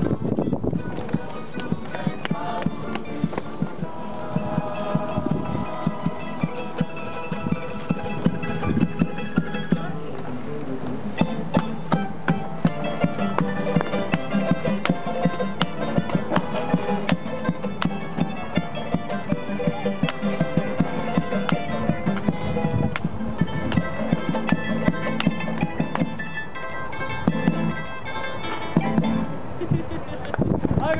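Live acoustic ensemble of guitars, mandolins and violin playing a lively tune with group singing, kept in time by a drum beaten with sticks in a steady, clicking rhythm.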